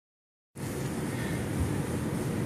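Steady rushing background noise with a low rumble, starting about half a second in after a moment of silence.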